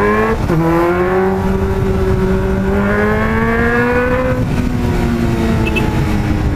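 Honda CB600F Hornet's inline-four engine pulling hard under acceleration. Its pitch drops sharply about half a second in at an upshift, climbs steadily for several seconds, then falls back to a lower, steadier note near the end. Wind noise rushes underneath.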